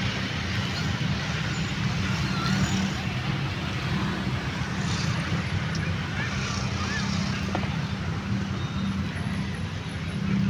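City street traffic: a steady low rumble and hiss of passing vehicles.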